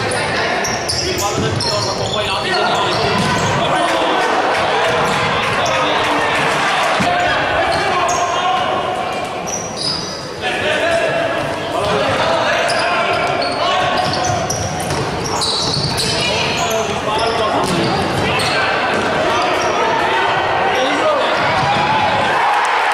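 Futsal game in a large indoor sports hall: players and spectators shouting over each other while the ball is kicked and bounces on the wooden court, with many short sharp sounds throughout.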